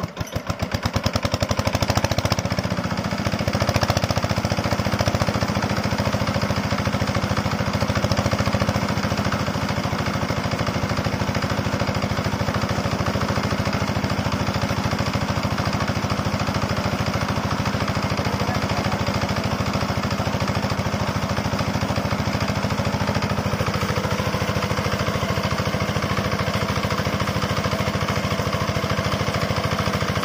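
Small single-cylinder diesel engine of a shallow-well irrigation pump catching after a hand-crank start, speeding up over the first couple of seconds and then running steadily with an even, rapid knock. Water pumped from the outlet pipe splashes out under it.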